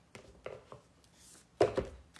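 Tarot cards being handled: faint, soft paper rustles and small clicks as a card is drawn from the deck. Near the end comes a sudden loud thump.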